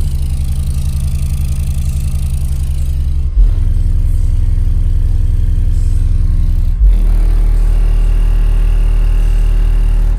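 Two Sundown X-series 18-inch subwoofers playing deep bass music at low power on their first test, sitting loose in their box before being screwed down. Three long, sustained bass notes, changing about every three and a half seconds.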